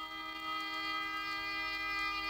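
Orchestral ballet music: a single long note held steady in pitch, with the reedy sound of a wind instrument.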